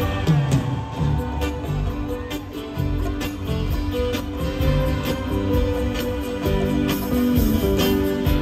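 A live band playing an instrumental passage, with a drum kit keeping a steady beat under guitar, bass and keyboards.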